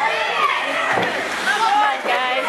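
Hockey rink spectators talking and calling out over one another, many voices at once. A single knock is heard about a second in.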